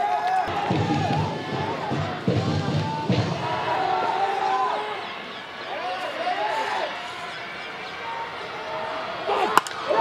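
Baseball stadium sound: music from the stands with held tones and heavy drum-like thumps, along with voices. Near the end comes a sharp crack as the bat meets the pitch and the ball is hit for a base hit.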